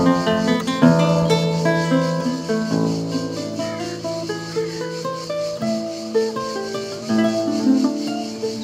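Arch harp guitar fingerpicked: a melody of plucked notes over long-ringing bass strings. Cicadas buzz steadily behind it.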